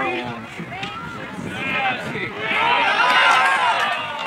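Several men shouting and cheering together as a goal goes in, with many overlapping voices that grow loudest about three seconds in.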